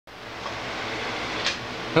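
Large blower fan running with a steady rush of air, and a brief click about a second and a half in.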